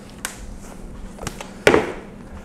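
Workshop handling sounds: a few light taps, then one louder sharp knock near the end as a plastic storage crate is picked up and handled beside the upholstered seat.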